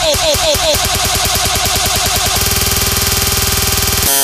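Vixa-style electronic dance music in a build-up. Falling synth stabs about four times a second give way to a steady rapid pulse, which tightens into a fast buzzing roll about two and a half seconds in.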